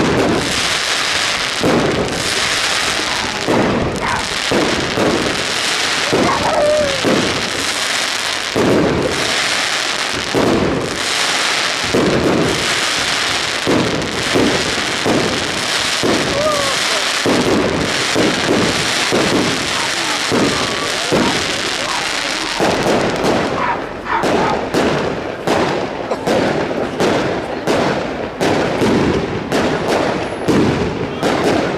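Fireworks display: a continuous run of bangs and crackles from shells bursting overhead, turning into sharper, more separate crackling in the last several seconds.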